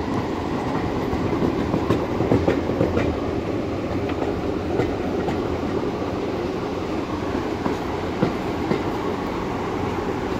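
Railway passenger carriage running along jointed track: a steady rumble with wheels clicking irregularly over the rail joints.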